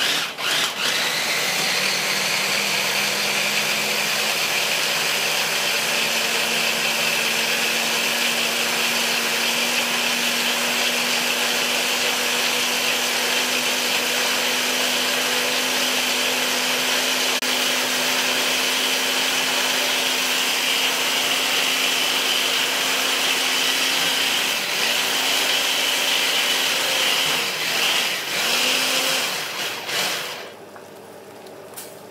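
Small electric mini chopper with a motor head on a glass jar, running steadily as it purees basil and oil into pesto. Near the end its hum dips and picks up again a few times, then it stops.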